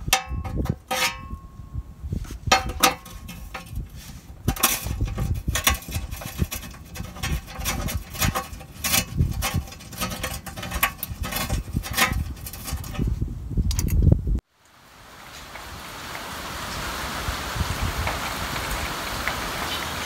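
Irregular metal clicks, clinks and knocks as the pan bolts are started back into a 1968 Ford's FMX automatic transmission by hand. About fourteen seconds in the sound cuts abruptly to steady rain on a metal carport roof, which slowly grows louder.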